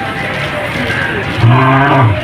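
Male lion giving one deep, moaning grunt about half a second long near the end, dropping in pitch as it finishes.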